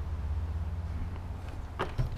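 Handling noise from a folded e-bike being lifted and pivoted out through a car's door opening: a low steady rumble with a short bump near the end.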